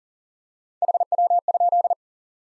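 Morse code sent at 40 wpm as a single steady tone of about 700 Hz, keyed in quick dits and dahs starting about a second in. It is the QSO element "how copy?" (HW?) repeated in code.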